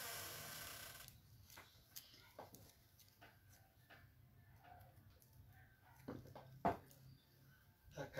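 Near silence of a small room, with faint handling noises and a single sharp knock about six and a half seconds in.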